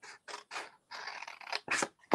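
Small scissors snipping through scored patterned paper in a quick run of about six short cuts, the last ones loudest, as a corner square is cut away.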